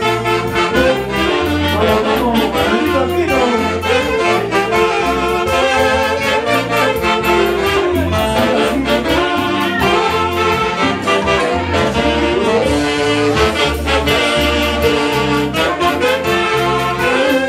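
A live band's saxophone section playing a lively melody together over a steady, pulsing bass beat.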